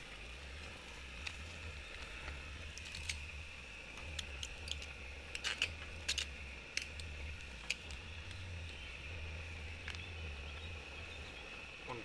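Scattered light clicks and taps of wooden tongs and food being laid on the grate of a small stainless-steel portable gas grill, over a steady low rumble.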